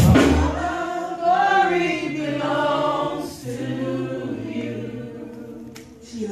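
Gospel worship singing: voices sing slow, sliding lines over a held low note. The full band drops out right at the start, and the singing fades away toward the end.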